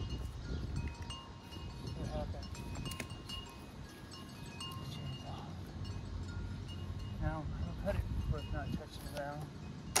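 Quiet outdoor background: a low rumble of wind on the microphone, scattered short chime-like ringing tones at several pitches, and a few light knocks. Near the end, a quick run of chirping calls.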